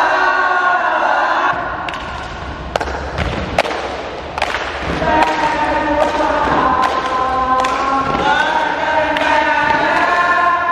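A group of young scouts singing a scout cheer (yel-yel) in unison, with held 'laa la la' notes. Between about two and five seconds in the singing drops back and a string of sharp percussive hits stands out, then the sung chant returns with sustained notes.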